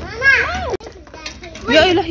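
A young child's high voice in two short vocal bursts without clear words; the first cuts off suddenly just under a second in, and the second begins near the end.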